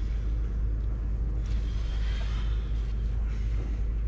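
A steady low rumble with a hiss over it, the hiss swelling briefly in the middle.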